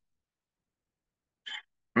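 Dead silence, broken about one and a half seconds in by a man's brief, sharp intake of breath before he speaks.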